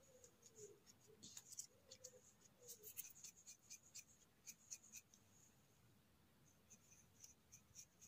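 Faint, quick scratchy strokes of a knife scraping and then a soft brush sweeping dirt off a penny bun (porcini) mushroom as it is cleaned, coming in clusters with a pause about five seconds in before a last run of strokes.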